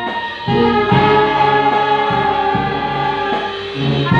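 Brass band with clarinets and saxophones playing sustained chords over a repeating bass line, with a brief dip about a quarter-second in before a new chord enters, and a fresh phrase starting at the end.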